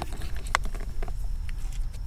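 A few light clicks and taps from hands handling the dash cam power cable and plastic trim, one clearer click about half a second in, over a low steady rumble.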